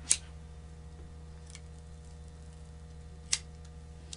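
Two sharp clicks about three seconds apart, with a fainter one between, over a steady low hum: a lighter being flicked to burn the dry silk span off a fish fin.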